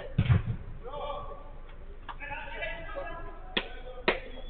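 Thumps of a football being struck on an artificial-turf pitch: a heavy one about a third of a second in and a sharp knock near the end, among players' distant shouts.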